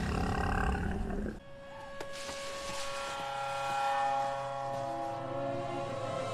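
A cartoon creature's low, rough roar from the episode soundtrack that stops about a second and a half in. After a single click, held music chords swell in.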